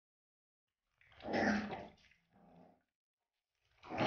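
Puppy grunting as it strains over the rim of a water basin, its legs too short to reach the water easily: a loud grunt about a second in, a fainter one just after, and another loud grunt near the end.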